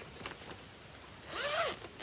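A fabric project bag's zip being pulled open in one quick stroke about a second in, its buzz rising then falling in pitch.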